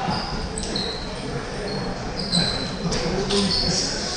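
Table tennis ball clicking off bats and the table during a rally in a large hall, with short high squeaks from players' shoes on the floor and background voices.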